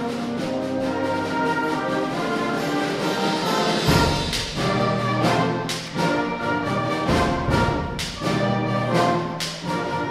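A school concert band playing a brass-heavy piece: held chords for about four seconds, then loud accented hits with drums from about four seconds in.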